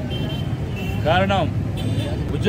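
A man's speaking voice, one phrase about a second in, over a steady low rumble of road traffic.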